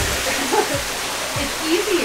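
A steady, even hiss of background noise, with a person's voice heard briefly twice beneath it.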